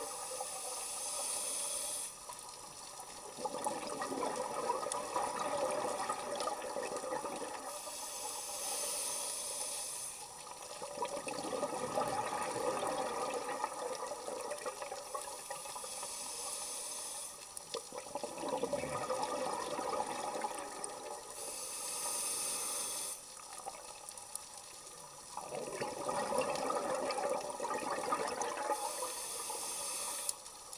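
Scuba diver breathing through a regulator, heard underwater. A hissing inhale of about two seconds alternates with a longer burble of exhaled bubbles, in a slow cycle repeating about every seven seconds.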